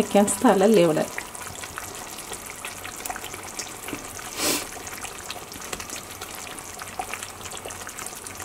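Thick red fish-curry gravy simmering in a pan, with soft bubbling and sizzling as raw fish pieces are laid into it; a brief louder hiss about halfway through.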